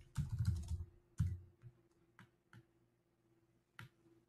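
Typing on a computer keyboard: a quick run of keystrokes near the start, then a few scattered single key clicks.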